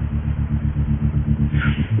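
Low rumble with a steady hum, pulsing several times a second, breaking off for a moment near the end.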